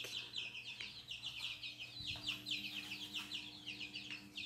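Young chicks in a brooder peeping continuously: many short, high, downward-sliding peeps overlapping in quick succession. A faint steady hum runs underneath.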